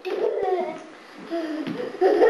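A small child's voice, babbling in two short stretches of wordless sounds.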